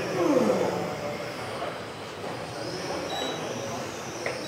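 RC cars racing on an indoor track, their motors whining and shifting in pitch as they pass, with one clear falling whine about half a second in.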